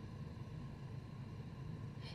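Faint room tone: a low, steady background hum with no distinct sound events.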